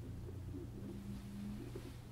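Quiet room tone with a low, steady hum; a faint held tone rises briefly in the middle.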